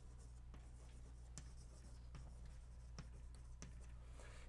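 Chalk writing on a blackboard: faint, scattered taps and scratches of the chalk stick, over a steady low hum.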